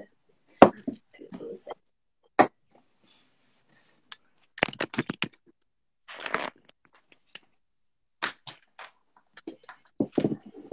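Pencils and small objects being picked up and set down on a tabletop: scattered sharp knocks and clicks, a quick run of them about five seconds in, and a short rustling scrape just after.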